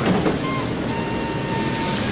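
Steady rushing noise of a commercial kitchen's hot ovens and ventilation, with a brief metallic clatter at the start as a chef works an oven door and pan with tongs.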